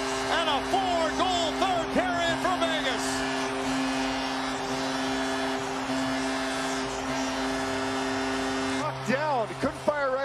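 Arena goal horn after a home goal, one long steady blast that cuts off about nine seconds in, with goal music playing over it.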